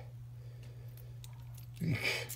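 Faint small clicks of a small lock cylinder being handled in the fingers over a steady low hum. A short exclamation, "eek", comes near the end.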